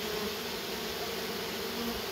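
Honeybee swarm buzzing in a steady hum as the remaining bees of a shaken-down swarm crowd into the hive entrance after their queen.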